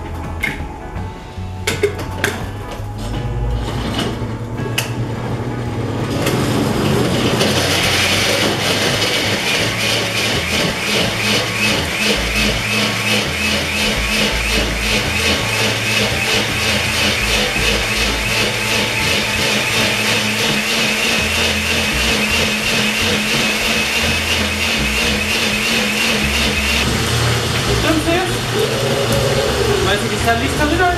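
Glass-jar countertop blender grinding soaked dried chiles, onion, garlic, cumin and water into a thick adobo purée. It starts about six seconds in after a few clicks and knocks of the jar being handled, runs loud and steady for about twenty seconds, and stops a few seconds before the end.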